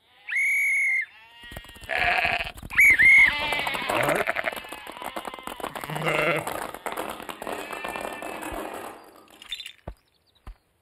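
A flock of cartoon sheep bleating in many overlapping voices. It opens with one steady high call lasting under a second, and the calls thin out near the end.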